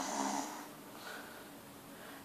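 A boy's faint breathy vocal sound, a murmured exhale through the open mouth, in the first half second, then low room tone.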